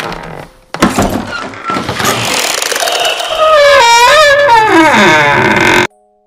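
Horror jump-scare sound effect: a sharp hit about a second in, then a loud noisy blast with a wavering shriek that falls in pitch, cutting off suddenly just before the end.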